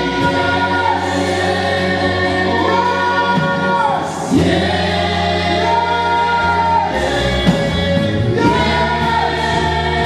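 A choir singing gospel music in long held notes over sustained accompanying chords.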